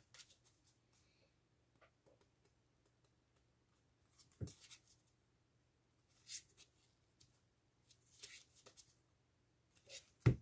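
Faint handling of a deck of playing cards as it is cut through: a few soft clicks of cards, about four and a half seconds in, again near six and a half seconds, and a small run of them near the end, with near silence in between.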